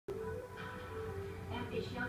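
A television news broadcast: background music with held tones, and a newsreader starting to speak in Mandarin near the end.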